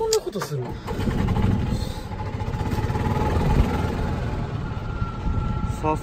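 Golf cart running along: a steady low rumble with a faint steady whine over it.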